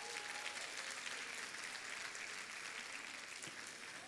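Faint applause from a large seated audience: scattered hand claps merging into a soft patter that thins out toward the end.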